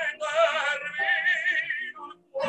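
Operatic tenor singing an aria with a wide vibrato, holding a long note through the second half. It is heard through an iPhone's built-in microphone over Zoom, which compresses the voice.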